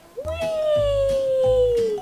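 A girl's long, drawn-out "wheee!", held for over a second and a half and sliding slowly down in pitch.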